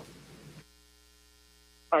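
Faint, steady electrical hum, a set of several steady tones, on an open remote audio line, most likely the reporter's telephone line, before the caller speaks. A man's brief "uh" comes at the very end.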